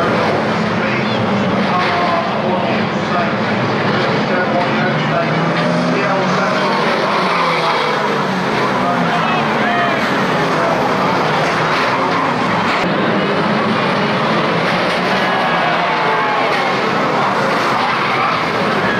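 A pack of saloon stock cars racing together, many engines revving up and down at once in a steady, loud blend.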